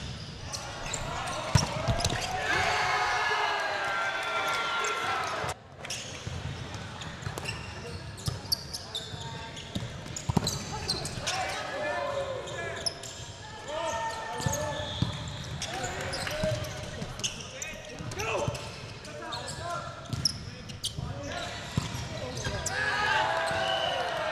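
Volleyball being played in a gym: sharp knocks of the ball being hit and landing, with players shouting several times over background chatter.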